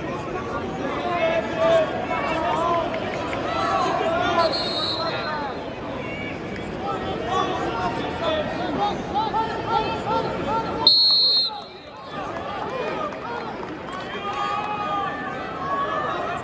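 Arena crowd and coaches shouting and calling out during a wrestling match, many voices overlapping. Two short high-pitched blasts cut through about four and a half and eleven seconds in, the second the loudest.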